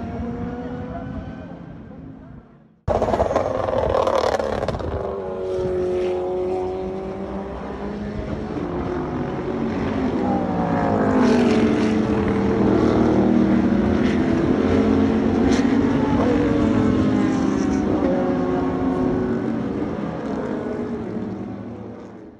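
SUPER GT race car engines. Cars on the circuit fade away over the first three seconds and the sound cuts off abruptly. Race engines then come straight back in, their pitch rising and falling, loudest around the middle and fading out at the end.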